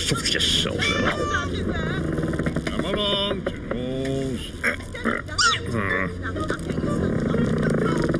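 Wordless cartoon character voices: mumbled vocal sounds and exclamations with gliding, bending pitch, over a busy background of cartoon sound effects.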